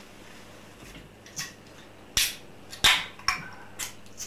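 A handful of sharp clicks and knocks from objects being handled on a table, about five in all, the two loudest a little past the middle.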